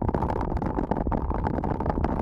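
Wind buffeting an action camera's microphone on a mountain bike, over the rumble of tyres rolling on a dirt road. A dense, irregular patter of small clicks and rattles from the bike runs through it.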